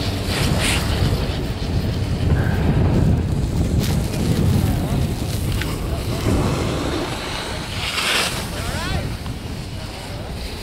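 Wind buffeting the microphone of a skier going fast downhill: a steady low rumbling rush of wind noise.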